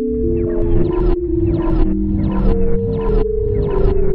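Electroacoustic computer music: several held synthesized tones that slide slowly in pitch and overlap, over a chopped sampled loop that cuts on and off about twice a second.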